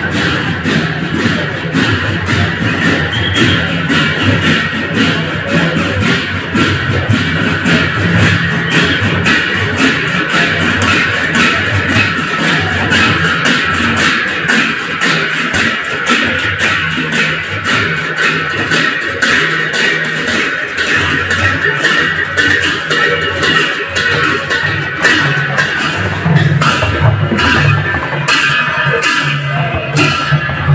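Assamese folk procession band playing: dhol barrel drums beaten in a fast, dense rhythm under continuous clashing of hand cymbals.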